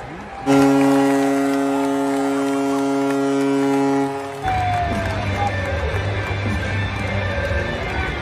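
Hockey arena goal horn signalling a goal: one long, low, steady blast of about four seconds that cuts off suddenly, followed by crowd cheering and arena music.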